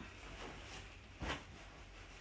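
A soft rustling thump of a pillow being set down on the bed about a second in, against faint room tone.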